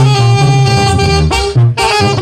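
Tamborazo zacatecano band playing live: brass horns hold long notes over a heavy bass line and drums, with a brief break and a sharp drum hit near the end.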